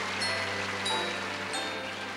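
Grand piano playing a slow introduction: a held low chord with short high treble notes struck about every two-thirds of a second, over a steady hiss.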